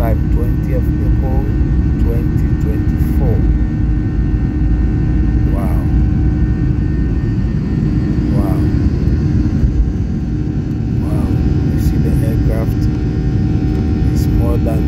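Jet airliner's engines at takeoff power heard from inside the cabin during the takeoff roll and lift-off: a loud, steady low rumble with a steady hum through it.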